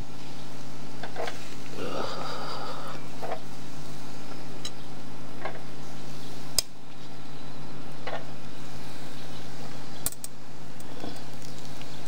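Metal kebab skewers clinking several times as they are set down side by side, over a steady low hum and the faint sizzle of the hot, freshly grilled kebabs.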